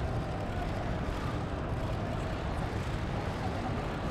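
Steady low rumble of background noise with an even hiss above it.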